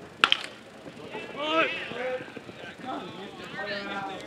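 A baseball bat hitting a pitched ball with one sharp crack, followed by spectators shouting as the ball is put in play.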